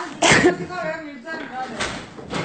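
Schoolchildren's voices in a classroom: a sudden loud vocal outburst about a quarter second in, then drawn-out raised voices, and another burst near the end.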